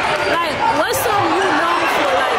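Basketball game sounds in a gym: sneakers squeaking on the hardwood court, with short gliding squeaks and a sharp click about a second in, over steady crowd and player voices in the hall.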